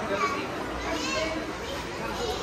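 People's voices talking, the words unclear, with a higher voice rising and falling about halfway through.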